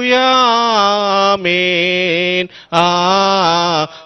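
A man singing a Telugu Christian hymn of praise in long, drawn-out held notes, the melody stepping down in pitch, with a brief pause for breath about two and a half seconds in.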